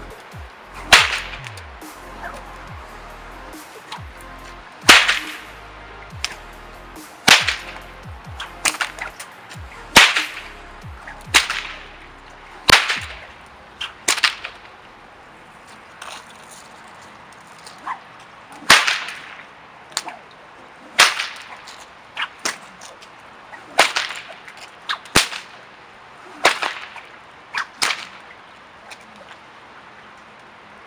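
Handmade eight-foot jute stockwhip cracking over and over: a run of about twenty sharp cracks, many a second or two apart, with a few seconds' pause about halfway.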